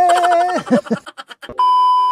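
A man singing a long held note that breaks off about half a second in, followed by a few quick clicks. Near the end comes a steady electronic beep tone lasting about half a second.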